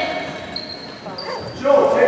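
Basketball game in an echoing gym: two brief high-pitched squeaks, typical of sneakers on a hardwood court, then a voice calls out loudly near the end.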